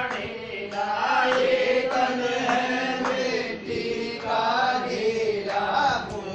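A group of voices chanting a Hindi devotional bhajan (kirtan) in short repeated phrases, each about a second long.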